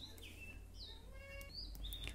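A low steady hum with a few faint, short high chirps scattered through it.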